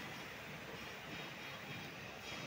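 Steady, fairly quiet background noise: an even rumble and hiss with no distinct events.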